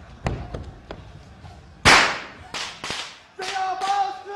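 A single loud gunshot-like bang about two seconds in, among scattered knocks and thuds on a stage floor. A long held tone starts near the end.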